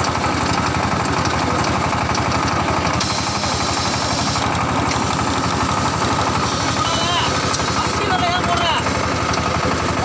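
Small clay wire-cut brick machine running steadily, giving a constant mechanical drone with a fast, even pulsing beat.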